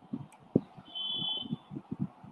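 Soft computer keyboard and mouse clicks while a slide is being edited, with a steady high electronic beep lasting just under a second about halfway through.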